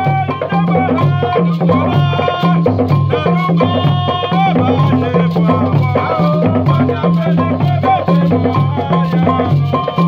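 African drum ensemble music: hand drums keep a steady repeating rhythm under a low pulsing bass line, with a sung vocal line bending in pitch over the top.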